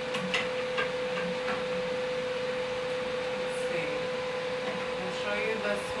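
A Zemits body contouring machine humming steadily at one pitch while powered on. A few light clicks come in the first second or so.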